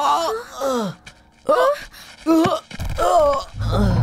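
Repeated short cries and groans of pain from a person being hit, each a strained call that bends and falls in pitch, coming about every two-thirds of a second. Low background music swells in near the end.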